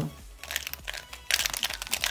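A Square-1 puzzle being turned quickly by hand, its plastic layers and slice clicking and clacking as they turn. A few scattered clicks come first, then a fast, dense run of clicks through the second half.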